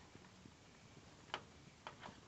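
Near silence with two small clicks, the first a little over a second in and the second about half a second later, from a screwdriver and the plastic parts of a gas boiler's control board being handled.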